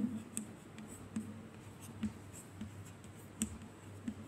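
Chalk writing on a chalkboard: faint scraping strokes with short taps where the chalk meets the board, the sharpest about three and a half seconds in.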